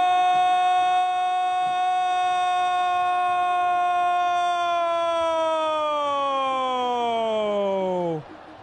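A football commentator's long drawn-out "gol" cry, held on one loud note for about eight seconds, sliding down in pitch over the last few seconds and cutting off at the end.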